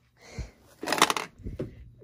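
Handling noise: a soft thump, then a short crinkling rustle about a second in, followed by a few light clicks, as things are picked up and moved around.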